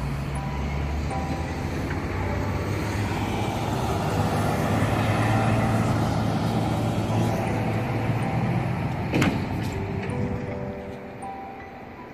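Road traffic: a car passing, its tyre and engine noise swelling over several seconds and then fading, with a single sharp click about nine seconds in.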